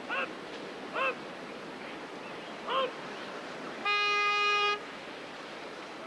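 Whitewater rushing on a slalom course, with three short shouts from spectators, then a steady horn sounding for about a second, the finish signal as the paddler's run time stops.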